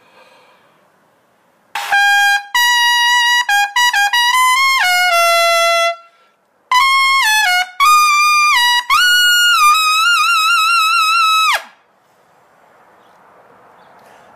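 Selmer Chorus 80J B-flat trumpet played in its high register: a quick run of notes, a short break, then a second phrase that ends on a long held note with vibrato, cut off cleanly.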